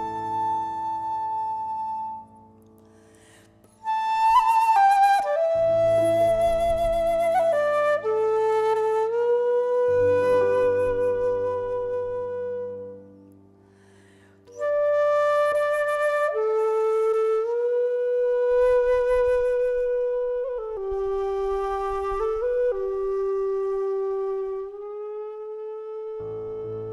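Wooden Irish flute playing a slow tune in long held notes, some with vibrato, over soft sustained keyboard chords. The music breaks off twice for about a second and a half.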